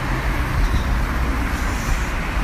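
Steady road traffic noise from cars passing on a busy city road, a continuous rumble and tyre noise.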